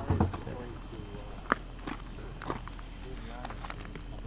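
Footsteps shuffling on the ground and faint, indistinct voices, with a single sharp snap about a second and a half in.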